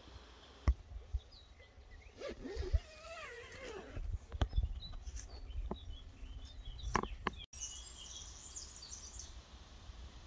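Outdoor ambience: low wind rumble on the microphone with a few sharp handling knocks, the loudest two near the start. A wavering call runs for about two seconds in the first half, and small birds chirp, more densely after an abrupt cut about three-quarters of the way through.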